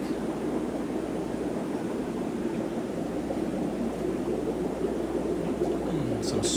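Steady ambient noise of aquarium air pumps and bubbling sponge filters, an even rushing hiss over a constant low hum with no distinct events.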